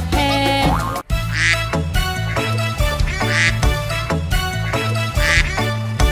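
Upbeat children's-song backing music with a cartoon duck quacking over it, three short quacks about two seconds apart.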